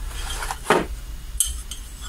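Small metal mounting brackets and their cardboard parts box being handled: a sharp knock under a second in and a lighter metallic click about a second and a half in, over quiet rustling.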